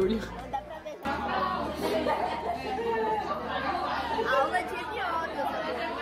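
Many voices talking over one another in a noisy classroom as students practise speech tests on each other, with background music underneath.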